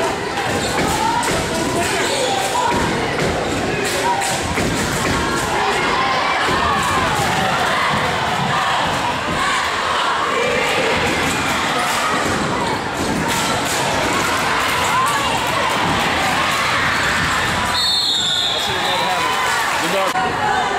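Basketball game in a gym: a ball bouncing on the hardwood, crowd cheering and shouting. Near the end, a short, shrill referee's whistle blast.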